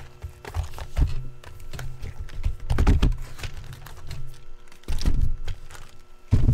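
Small cardboard trading-card boxes being handled and set down on a table: a run of light clicks and taps with a few heavier thuds, over faint background music.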